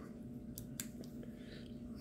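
A few faint sharp clicks and light taps from hands handling a 1950s Pax M2 rangefinder's metal body and its detachable back plate, over a faint steady hum.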